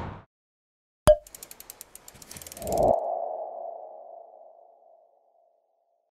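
Logo sting sound effect: a sharp click about a second in, a quick run of ticks at about ten a second, then a swell that settles into a ringing tone and fades out by about five seconds.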